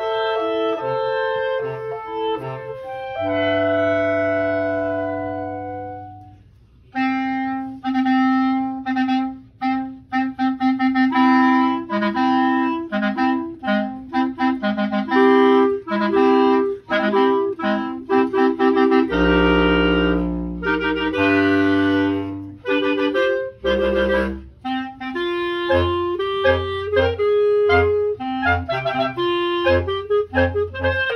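Live clarinet ensemble playing a piece, several clarinets in harmony over a low bass part. A held chord fades almost to nothing about six seconds in, then the music picks up again in quick, detached notes.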